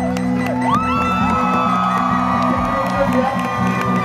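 Live band playing: steady bass, drums and cymbal strikes, and high held notes that slide up into pitch and fall away, with the crowd whooping and cheering.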